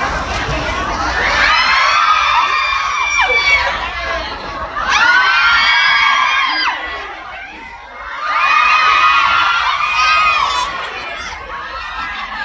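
A crowd of fans screaming and cheering in high voices. It comes in three waves of about two seconds each, with chatter in between.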